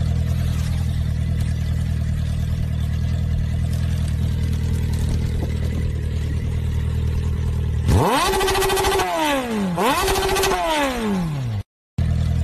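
Motorcycle engine sound effect: a steady low idle for about eight seconds, then two revs near the end, each rising and falling in pitch.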